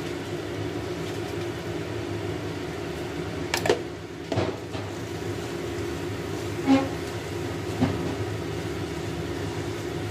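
Wooden spatula stirring and scraping thick curry paste around a stainless steel wok, with four sharp knocks of the spatula against the pan, the loudest past the middle. A steady low mechanical hum runs underneath. The paste is frying until its oil separates.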